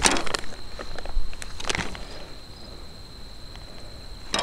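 Crinkling and rustling of the plastic sleeve of a flameless ration heater being handled, in a few short bursts, loudest right at the start and again just under two seconds in.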